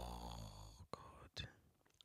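A woman's long, breathy sigh trailing off over the first second, followed by two faint clicks and a moment of near silence.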